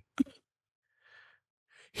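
A person's short vocal sound near the start, then a faint breath out about a second in, in an otherwise nearly silent pause.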